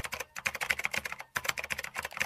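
Computer keyboard typing sound effect: a rapid run of clicky keystrokes, with two short pauses, as the end-screen text types itself in.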